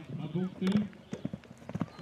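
A horse galloping on turf: a quick, irregular run of hoof thuds, plainest in the second half, with a voice over the first half.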